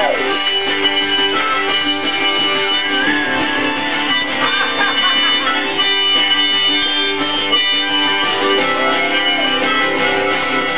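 Live acoustic folk music in an instrumental break: a harmonica playing over two strummed acoustic guitars.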